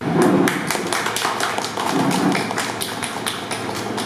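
A small group of people clapping, a dense, uneven patter of handclaps, with a faint steady hum underneath.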